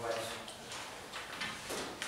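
A man speaking into a microphone in a meeting room, in short, broken phrases.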